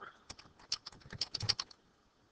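Computer keyboard typing: a quick run of about a dozen light key clicks, stopping a little before the end.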